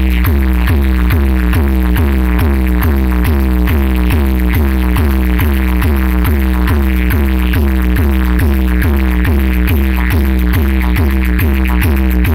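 Loud electronic dance music from an outdoor DJ sound system, with a heavy continuous deep bass under a quick repeating note pattern of about three notes a second.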